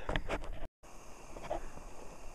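Quiet outdoor background with a few faint clicks, cut by a brief gap of total silence, then low steady ambient noise.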